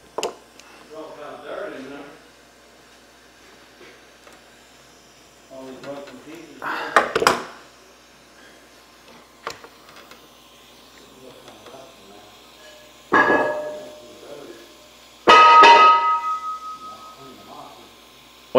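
Several sharp metallic clangs and bangs of shop noise. The loudest, near the end, rings on with a steady tone as it dies away over a few seconds.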